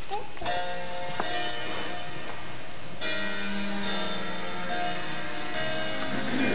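Music of held, sustained notes, with a new chord coming in about half a second in and another at about three seconds.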